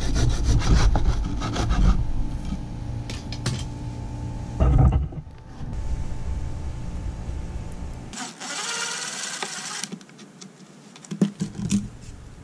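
A small bow saw rasping through a sun-dried adobe mud brick with quick strokes for the first couple of seconds, cutting it to size. This is followed by rougher, quieter scraping and a few sharp knocks near the end.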